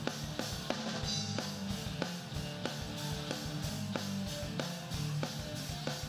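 Live rock band playing an instrumental passage: a drum kit keeps a steady beat of about three hits a second under electric guitars and bass guitar.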